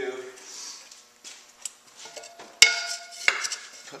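Hard objects clattering as a pottery wheel bat is handled and set on the wheel head: several light knocks, then one sharp strike with a short ringing about two and a half seconds in, and another knock soon after.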